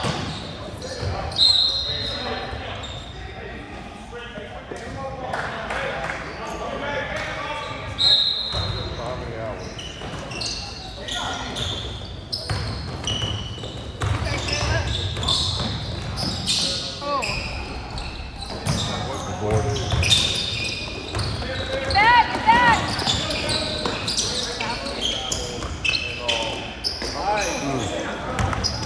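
A basketball being dribbled on an indoor court floor, with short sneaker squeaks and the voices of players and spectators echoing around a large gym.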